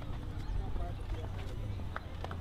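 Outdoor street sound: faint voices over a steady low rumble, with a few light taps such as footsteps.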